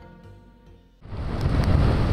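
The tail of gentle intro music dies away, then about a second in heavy typhoon-driven surf and wind cut in suddenly, a loud, dense, rushing noise of big waves breaking.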